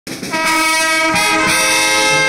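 Brass instruments playing slow, held chords whose notes change twice.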